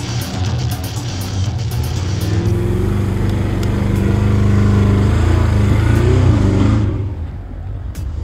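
Engine of a modified off-road 4x4 revving hard under load, rising in pitch and loudest in the middle, then falling away about a second before the end, mixed with background music.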